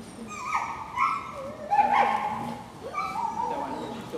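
A dog barking and yipping in high, short calls, about five times in quick succession, some sliding in pitch.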